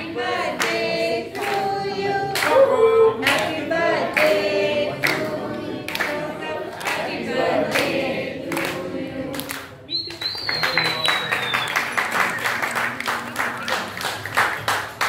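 A group of people singing a birthday song together, clapping along to the beat. About ten seconds in, the song ends and gives way to quick applause, with a short high whistle falling in pitch.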